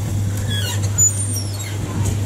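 Many short, high, falling chirps from small birds, scattered and overlapping, over a steady low hum.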